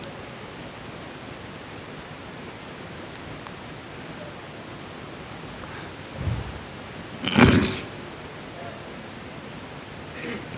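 Steady hiss of background noise through the microphone, broken by a short muffled thump about six seconds in and a louder brief rustle or puff a second later.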